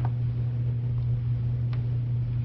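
A steady low hum, as of a motor or electrical appliance running, with a faint tick near the start and another near the end.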